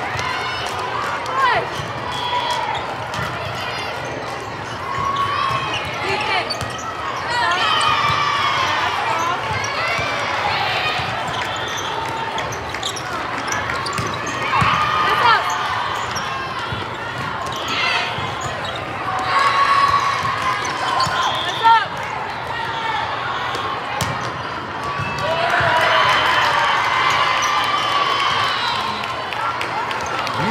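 Indoor volleyball play: the ball being struck and hitting the floor in sharp knocks, with players calling out and a constant din of voices, all echoing in a large hall.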